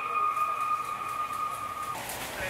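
A single steady electronic tone held from the sound system, with a fainter tone above it, cutting off just before the end.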